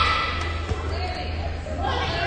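A volleyball thumps once, about two-thirds of a second in, in a gymnasium, over the chatter of players and spectators.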